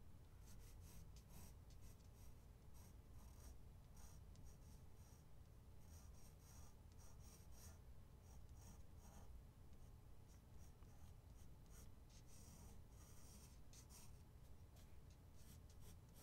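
Pencil lead scratching on drawing paper in many short, irregular sketching strokes, faint, over a low steady hum.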